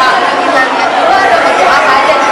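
A woman talking, with the chatter of other people around her.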